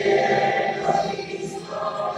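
A choir singing an anthem with accompaniment, held notes moving from one chord to the next.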